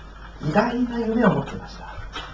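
Only speech: a man preaching in Japanese into a handheld microphone, one drawn-out phrase and then a short pause.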